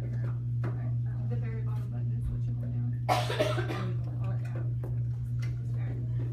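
A person coughs once, sharply, about three seconds in, over quiet murmured voices and a steady low hum.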